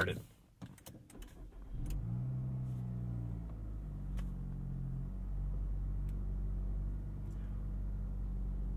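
A Nissan Altima's 2.5-litre four-cylinder engine starting by push button. After a few faint clicks, the engine catches about two seconds in and settles into a steady idle.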